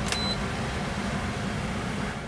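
Steady background hiss in a pause between speech, with a short, faint high beep just after the start.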